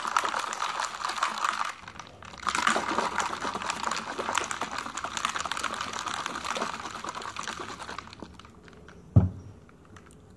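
Ice cubes rattling inside a plastic shaker bottle of shake mix shaken hard by hand, with a short break about two seconds in. The shaking dies down near the end, followed by a single thump.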